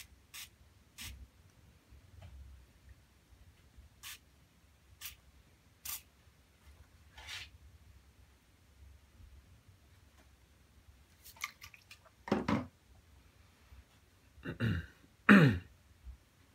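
Handheld water spray bottle spritzing onto the painting: about six short, separate squirts spread over several seconds. Near the end come a few louder handling noises.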